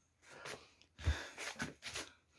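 Faint breathing and small movement noises in a small room, with a soft low thump about a second in.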